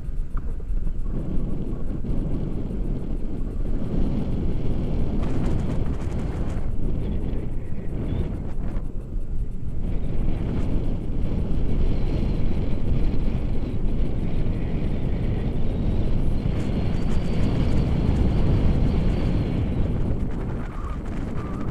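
Wind rushing over the camera microphone of a tandem paraglider in flight: a continuous low rumbling buffet that rises and falls in strength.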